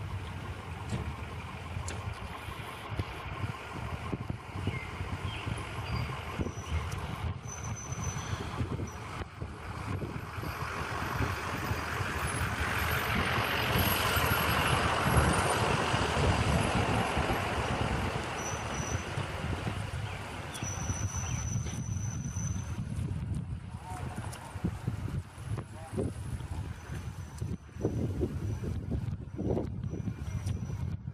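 Continuous outdoor rumble and noise, which swells to its loudest about halfway through and then settles back.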